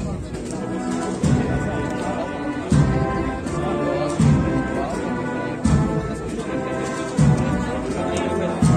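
A Spanish procession band (agrupación musical of brass and drums) playing a slow march, with held chords over a bass drum struck about every one and a half seconds.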